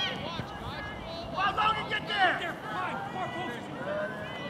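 Indistinct voices shouting and calling out over an open field, loudest about halfway through, with no clear words.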